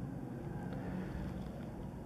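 A steady low background hum and rumble with faint hiss: room tone, with no distinct event.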